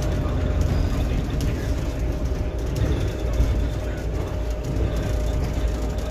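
Ride noise inside a moving London double-decker bus on the upper deck: a steady low rumble from the drive and road, with a faint steady hum and light rattles.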